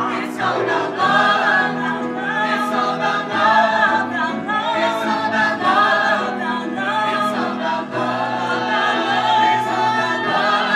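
A vocal ensemble of about ten singers sings a gospel-flavoured musical-theatre number in full harmony, with piano accompaniment underneath.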